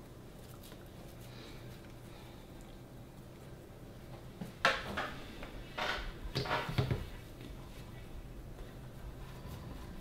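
Quiet room tone, then from about halfway through a short run of soft knocks and handling noises as balls of potato-roll dough are shaped by hand and set down on a metal baking sheet.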